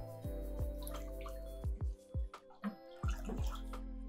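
Water sloshing and dripping as nutrient solution is stirred with a wooden spoon in an AeroGarden's plastic water basin, over steady background music.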